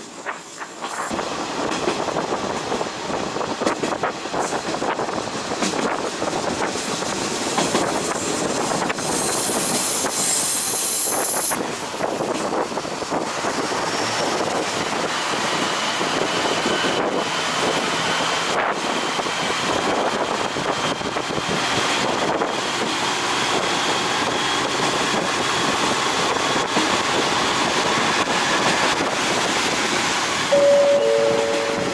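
Diesel railcar running along the track, heard from its open-air deck: a steady rush of wheels on rail and passing air, with a brief high squeal about ten seconds in.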